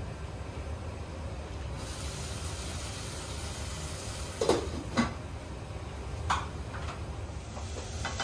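Steady low hum with a light hiss, and about halfway through a few sharp clinks of a pot lid and spoon against a cooking pot on a gas stove.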